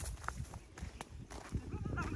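Footsteps on a dry dirt field path, a few soft crunches and scuffs, with a faint distant call near the end.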